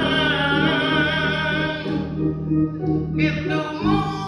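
Men's gospel ensemble singing long held notes over steady instrumental accompaniment; the voices drop out briefly past the midpoint and come back in near the end.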